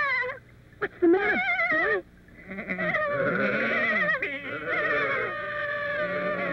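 A lamb bleating twice in a quavering voice, then several sheep bleating together in long, overlapping calls from about two and a half seconds in.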